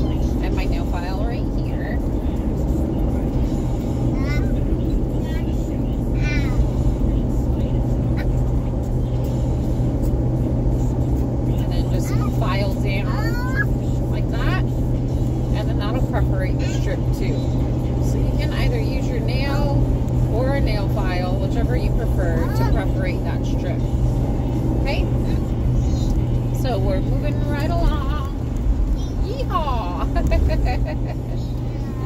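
Steady low drone of road and engine noise inside a moving car's cabin, with faint voices and music in the background.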